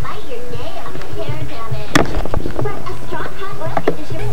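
Voices making sounds with no clear words, over background music, with one sharp click about two seconds in.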